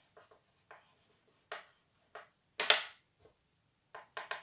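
Oil pastel rubbed on paper in short circular blending strokes: a run of brief scratchy strokes, with one louder, longer swipe a little past the middle.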